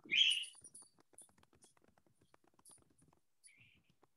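Faint, scattered computer mouse clicks while a screen share is being started, with a brief hiss in the first half second.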